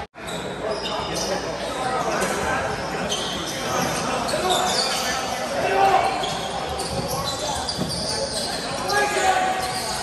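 Box lacrosse play on an arena floor, echoing in the hall: sneakers squeaking, knocks of sticks and ball, and scattered shouts from players and spectators. The sound comes in after a brief gap right at the start.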